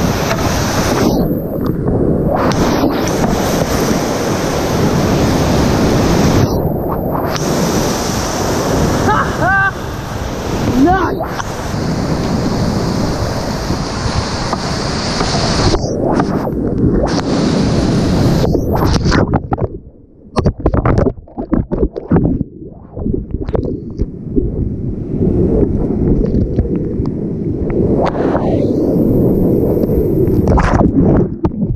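Rushing whitewater rapids and splashing around a kayak, heard loud and close with wind buffeting the microphone. Several times the sound turns suddenly dull and muffled as water washes over the camera, the longest spell about two-thirds of the way through.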